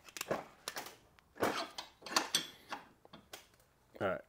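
Metal clinks and scrapes from hand tools on a metal tube clamped in a bench vise, as a thread-cutting tool is started on the tube. About six uneven strokes.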